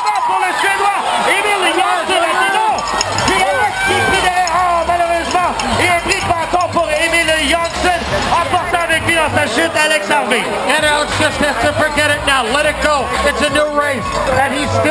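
Crowd of race spectators shouting and cheering, many voices overlapping continuously.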